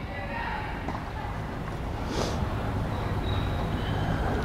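Steady low hum of a large indoor gym's room noise, with a short hiss about two seconds in.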